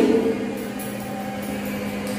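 Chalk writing on a blackboard, a few faint scratches and taps, over a steady low hum.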